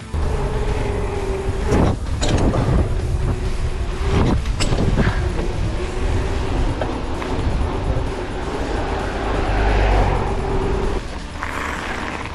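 Riding noise from a mountain bike: wind buffeting the action-camera microphone with a deep rumble, tyres rolling with a steady hum, and a couple of louder whooshes about two and four seconds in.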